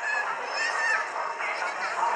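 High-pitched children's voices calling and chattering: many short, rising and falling calls overlap on a steady background hiss.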